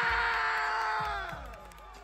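A ring announcer's long, drawn-out call of the fighter's name over the hall's PA, held on one pitch and trailing off about a second and a half in. A low beat of entrance music starts underneath at the same moment.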